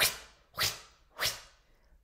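A woman blowing out three sharp, forceful breaths through the mouth, about half a second apart, each a short hiss of air that fades quickly.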